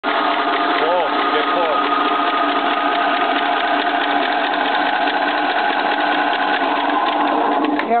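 Small garden tractor engine turning over steadily during a spark check, stopping right at the end.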